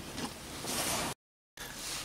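Faint steady background hiss with no distinct event. It cuts out to total silence for a fraction of a second a little after the first second, an edit break in the audio, then comes back.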